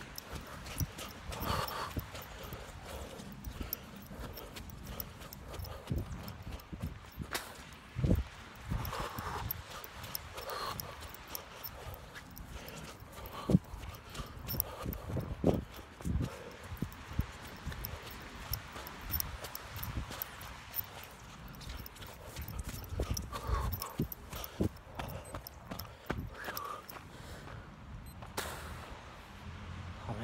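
Running footsteps during a shuttle sprint: a quick, uneven string of thumps and knocks, mixed with the rubbing and jostling of a phone carried in the runner's hand.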